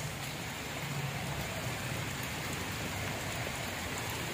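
A steady, even outdoor hiss with a few faint scattered ticks, like light rain.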